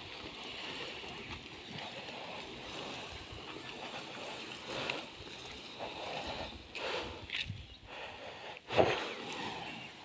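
A heavy log dragged by an elephant through wet grass and mud, a steady rough scraping with several louder bumps, the loudest near the end.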